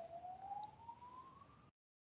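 A faint single wailing tone that slides slowly up in pitch, like a siren's wail, and then cuts off suddenly near the end.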